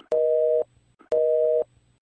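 Telephone busy signal: a two-note steady tone beeping twice, about half a second on and half a second off, the signal that the line is engaged.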